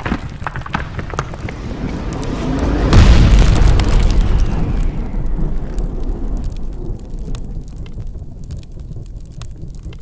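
Cinematic logo-intro sound effect: fiery crackling that swells into a deep boom about three seconds in, then a low rumble that slowly fades away.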